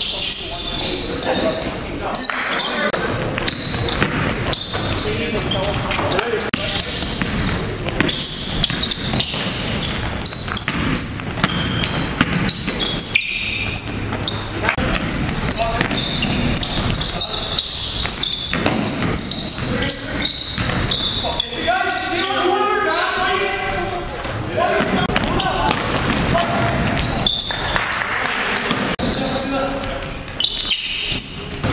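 Live game sound of indoor basketball: the ball bouncing on a hardwood gym floor again and again, with players' voices calling out, echoing in a large gymnasium.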